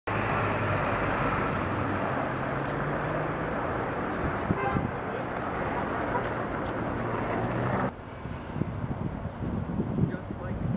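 Street traffic noise with a steady low engine hum. It cuts off abruptly about eight seconds in, leaving quieter outdoor sound.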